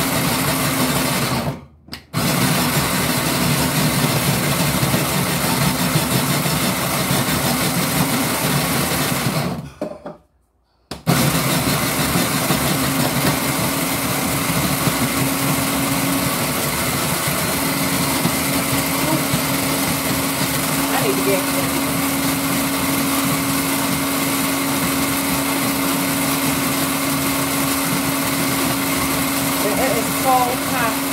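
Countertop electric snow cone machine running, its motor shaving ice with a loud, steady whir and hum. It stops briefly about two seconds in, and again for about a second around ten seconds in, then runs on.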